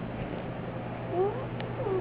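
A baby's short, soft, squealy vocal sounds: a brief sliding cry about a second in and another near the end, over a steady low hum.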